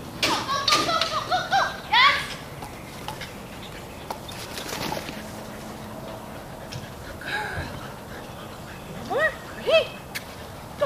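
Quick, high-pitched vocal calls in a short burst at the start and again near the end, with quiet between.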